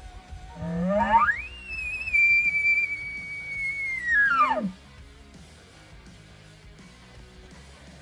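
Man-made elk bugle call blown through a bugle tube, imitating a bull elk: one long call that starts low, climbs to a high whistle about a second in, holds there for about three seconds, then drops back down and stops.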